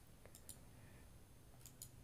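Near silence with a few faint computer mouse clicks: two within the first half second and two near the end.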